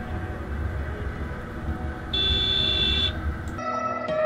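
Motorcycle riding along a road with a low, steady rumble of engine and wind, and a vehicle horn sounding for about a second midway. Near the end this cuts to music.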